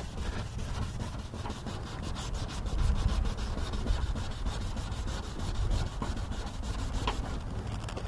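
600-grit sandpaper rubbed by hand over a wet plastic headlight lens in quick back-and-forth strokes, several a second, sanding off yellowed oxidation and small spots.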